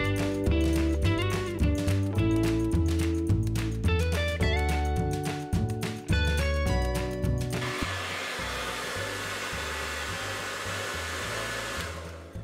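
Background music with a steady beat plays for the first seven seconds or so, then cuts off. A handheld hair dryer is then heard running steadily, with a faint high whine, and it stops at the very end.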